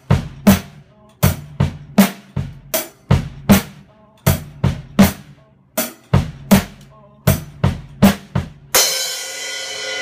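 Acoustic drum kit played in a steady groove of bass drum and snare strokes, closing about nine seconds in on a cymbal crash that rings out.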